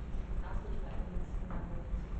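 Faint, indistinct voices in a committee room over a steady low rumble, with two soft knocks about a second apart.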